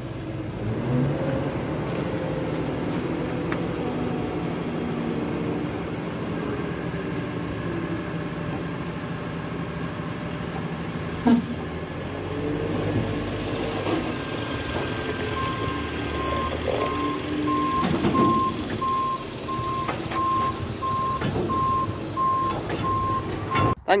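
Tractor engine running under load while a silage trailer tips its load of wholecrop, with a single sharp knock about 11 seconds in. A steady beeping warning alarm starts about two-thirds of the way through.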